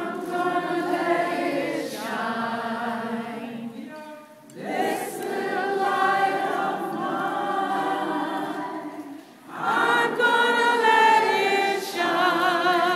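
Unaccompanied singing in three long, held phrases, with short breaks about four and nine seconds in and a wavering vibrato near the end.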